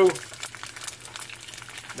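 Two freshly cracked eggs frying in oil in a seasoned cast iron skillet: a steady sizzle full of fine crackling.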